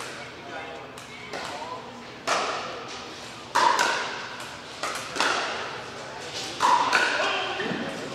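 Pickleball rally: paddles striking a plastic pickleball in a hollow, sharp knock roughly every second, each hit echoing around a large hall, with the loudest hits coming in the second half.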